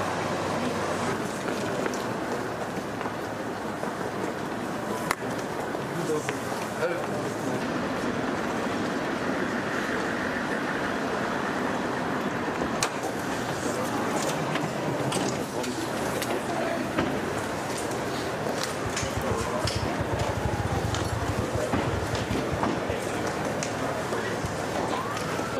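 Indistinct chatter of several people, with scattered sharp clicks and a low rumble for a few seconds near the end.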